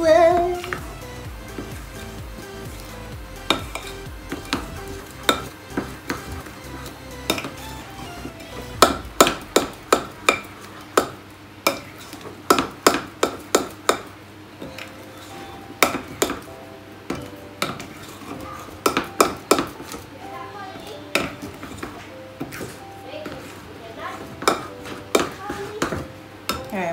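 A metal spoon stirring thick chocolate cake batter in a glass mixing bowl, scraping and clinking against the glass. From about a third of the way in, the clinks come in quick runs of several strokes a second.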